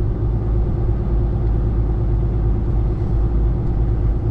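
Semi truck's diesel engine and road noise, a steady low rumble with a faint steady hum, heard from inside the cab while the truck drives slowly along a snow-covered street.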